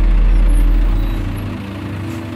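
Deep rumble of heavy vehicles swelling and then fading about a second and a half in, over a steady hiss of traffic noise, with ambient background music underneath.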